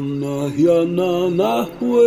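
Men's voices chanting a Dene song in vocables, holding sustained notes that step and glide in pitch.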